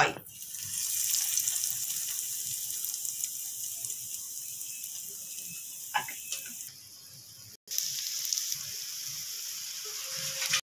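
Breadcrumb-coated vegetable potato cutlets sizzling as they shallow-fry in hot oil in a pan. The steady hiss starts as the first cutlet goes into the oil and cuts out for a moment about three-quarters of the way through, then goes on.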